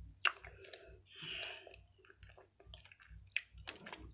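Close-miked chewing of a mouthful of soft edible clay paste: wet, sticky mouth sounds with sharp clicks and smacks, and a short hiss about a second in.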